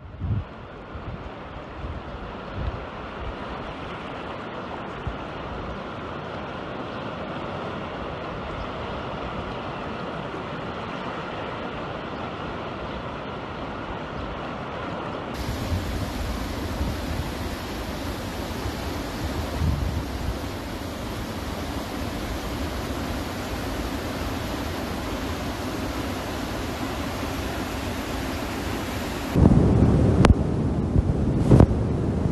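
Flash floodwater rushing: a steady, even noise of moving water, with wind buffeting the phone microphone at times. About halfway through, the sound changes abruptly as one flood recording cuts to another that has more low rumble.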